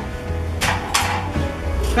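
Background music, with a brief noisy rustle and clatter from about half a second to one second in as a clear plastic cover is lifted off a metal tray.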